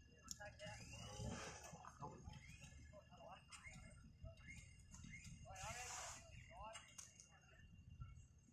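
Quiet, indistinct talking near the microphone over a low, steady rumble.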